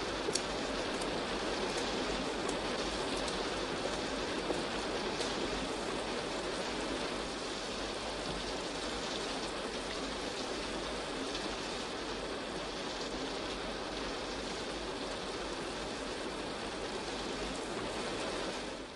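Steady rainfall, a continuous even hiss of rain coming down, with a few sharp drip ticks near the start.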